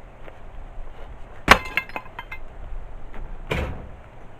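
A heavy stone block dropped onto stones with a sharp clack and a few small rattling clinks after it, then a second, duller knock near the end.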